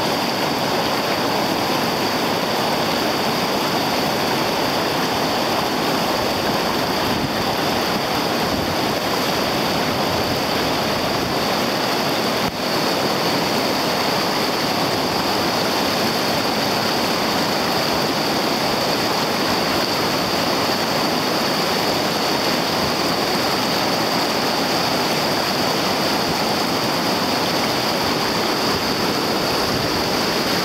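Whitewater rapid rushing and churning steadily, a loud continuous roar of fast water over rocks.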